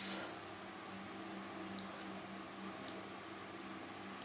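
Faint trickle of water poured sparingly from a glass onto already moist potting soil around newly planted crassula offshoots, their light first watering, with a few soft ticks about two and three seconds in.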